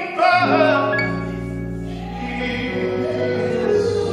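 Live gospel music: a church praise team singing, led by a male singer on microphone, with sustained notes under the voices.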